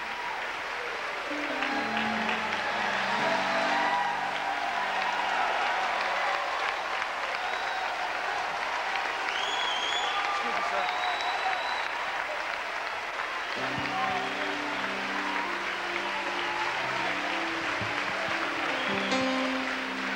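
Large congregation applauding steadily, with a few high whoops and shouts near the middle, over held keyboard chords that sound early on and again in the last third.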